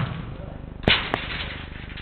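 A football struck hard during an indoor five-a-side game: one sharp smack about a second in, then a second, smaller knock a quarter-second later.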